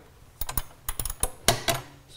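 Ratchet wrench clicking in short irregular strokes on a battery-bracket bolt: a quick run of sharp metal clicks that starts about half a second in and stops near the end.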